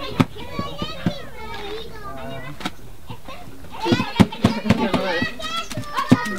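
Hands slapping and patting corn masa into tortillas, sharp slaps coming irregularly under lively chatter of several voices. The talk grows louder and busier about four seconds in.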